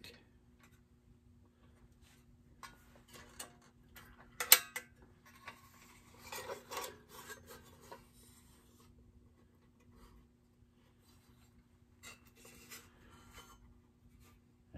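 A vintage Marx metal toy dump truck being turned over and handled: scattered clicks, light rubbing and small rattles of the metal body and wheels, with one sharp click about four and a half seconds in as the loudest.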